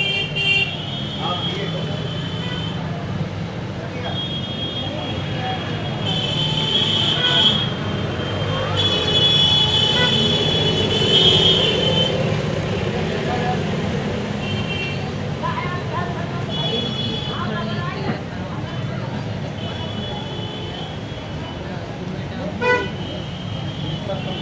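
Vehicle horns honking again and again in busy street traffic: about seven high horn blasts, each a second or more long and the longest about three seconds near the middle, over a steady traffic rumble.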